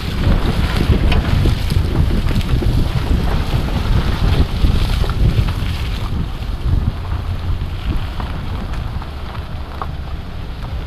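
Wind buffeting the microphone of an action camera mounted on the outside of a pickup truck, a heavy low rumble, as the truck rolls along a dirt trail over packed earth and dry leaves with scattered small clicks. The higher hiss eases about six seconds in.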